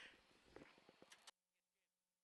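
Near silence: faint background hiss with a few soft clicks, cutting off to dead silence a little over a second in.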